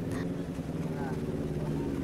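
A motor vehicle engine running at a steady pitch.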